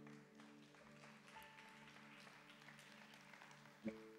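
A faint keyboard pad chord held steady under near silence, with a brief soft sound just before the end.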